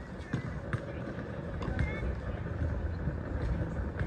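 Outdoor urban park ambience: people talking in the background over a low steady rumble, with a few short sharp knocks.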